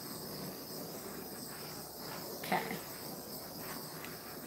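A faint, steady, high-pitched chirring drone, with one short soft vocal sound about two and a half seconds in.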